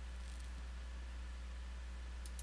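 Room tone: a steady low electrical hum with faint hiss, and a faint brief scratchy sound about half a second in.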